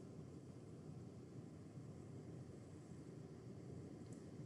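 Near silence: a faint, steady low hiss of room tone.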